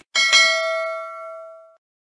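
A bell chime sound effect for a notification bell being clicked: two quick strikes, then ringing that fades for about a second and a half and cuts off sharply.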